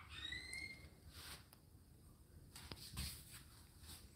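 Near silence: room tone, with a faint short squeak that glides up and levels off in the first second, then a few soft clicks.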